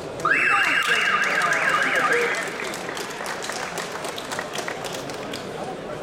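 An electronic timer signal sounds for about two seconds, its pitch warbling rapidly up and down, stopping the wrestling bout at the end of a period. It is followed by scattered clapping.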